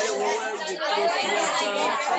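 Overlapping chatter of a group of young people talking in pairs at the same time, swapping compliments and thanks.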